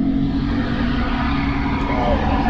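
Steady low rumble and hum inside a moving aerial cable-car cabin as it travels along the line.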